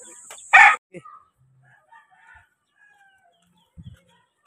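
Chicken calls: a short, loud squawk about half a second in, followed by fainter scattered calls. A soft thump comes near the end.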